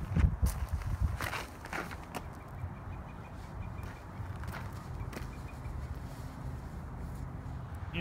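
A few quick footsteps on a dirt tee pad during a disc golf throw's run-up, bunched in the first two seconds, over a steady low rumble of wind on the microphone.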